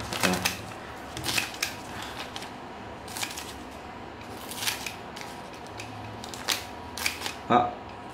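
Mitsubishi compound-action tin snips cutting a sheet of paper: about half a dozen short, crisp snips, some in quick pairs, spaced a second or so apart, the blades and pivot clicking with each stroke.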